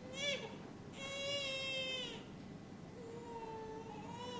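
A person's voice in a high, wordless whimper, like a child crying or a cat mewing: one short rising-and-falling whine at the start, then two longer held whines, the first about a second in and the second near the end.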